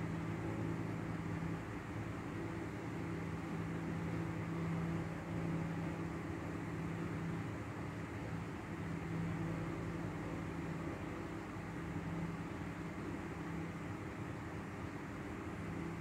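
Steady background hum with hiss: a few low steady tones under an even noise, unchanging throughout and with no speech.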